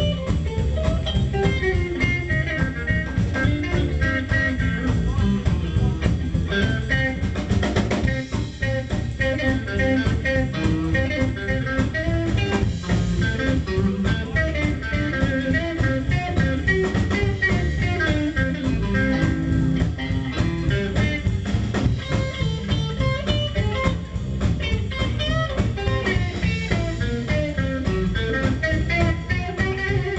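A live blues trio playing an instrumental passage: electric guitar over upright double bass and a drum kit.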